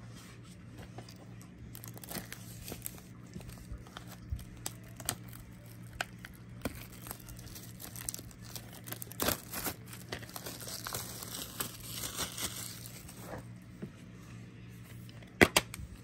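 Plastic shrink wrap being picked at, torn and peeled off a DVD case: irregular crinkling and tearing with scattered small clicks. Near the end a couple of sharp clicks as the plastic DVD case is snapped open.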